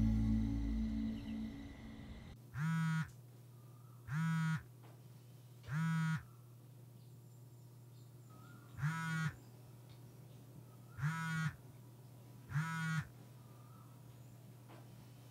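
Six short buzzing phone notification alerts, in two groups of three, one for each incoming chat message. Quiet in between. Background music fades out over the first two seconds.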